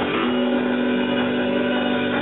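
Live rock band of electric guitar, electric bass, acoustic guitar and drums holding a sustained, ringing chord.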